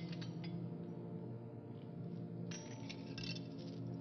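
Iron chains and manacles clinking: a few clinks at the start, then a longer jangle from about two and a half seconds in. Under them is a low, sustained music underscore.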